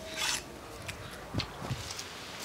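Watermelon rind slices rubbing and scraping against a steel plate as they are handled, a short scrape near the start, then a couple of soft thuds.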